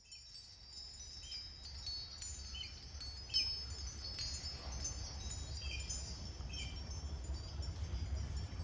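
Wind chimes ringing, struck at irregular moments with their high tones left to ring, fading in at the start over a steady low hum.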